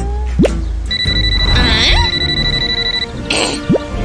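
Cartoon smartphone ringing: a steady high electronic ring lasting about two seconds, over upbeat background music.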